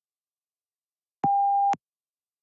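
A single electronic beep: one steady mid-pitched tone about half a second long, starting a little over a second in and clicking on and off. It is the PTE read-aloud prompt tone that signals the start of recording.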